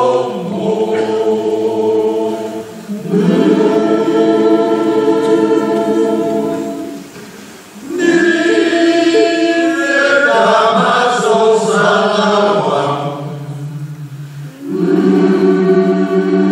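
Large choir singing held chords in long phrases, with brief dips between phrases about 3, 8 and 15 seconds in.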